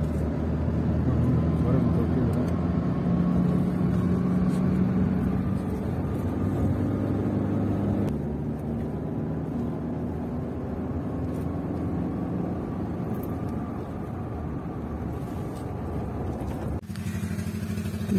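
Steady road and engine drone heard from inside a car driving through a road tunnel, with a low hum under it. It cuts off abruptly near the end.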